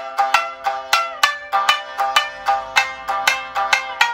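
Shamisen fitted with Indian-style chikari sympathetic strings, struck with a plectrum in a quick run of about five notes a second with pitch slides. The sympathetic strings and sawari buzz leave rich overtones ringing on under the notes.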